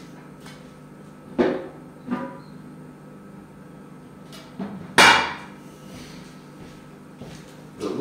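Metal cab cover of a large RC wheel loader being set in place by hand: a few sharp knocks and clanks, the loudest about five seconds in, over a steady low hum.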